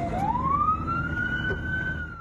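Ambulance siren wailing, heard from inside the moving ambulance: its pitch rises over about a second and then holds high, over the low rumble of the vehicle on the road.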